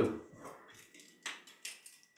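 A few brief, faint crackles of a dried teasel head being handled and trimmed by hand, as its small dry leaves are pinched off.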